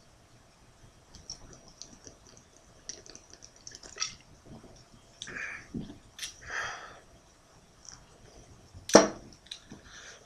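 Scattered faint clicks and small handling noises, then a single sharp knock about nine seconds in.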